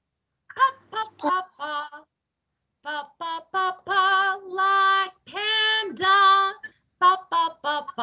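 A woman singing in short phrases: a run of quick syllables, a brief pause, then longer held notes, with one note sliding down about three quarters of the way through.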